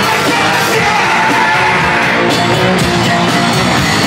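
A hardcore punk band playing live at full volume: distorted electric guitar and drums in a continuous fast wash, with shouted, yelled vocals over the top.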